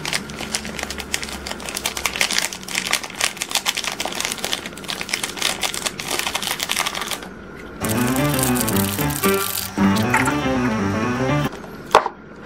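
Rapid crinkling and tapping of a foil seasoning sachet as cheese powder is shaken out into a paper noodle cup, for about seven seconds. Then a short stretch of background music plays.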